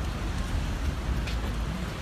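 Steady outdoor background noise: a low rumble with an even hiss, and a faint knock a little past the middle.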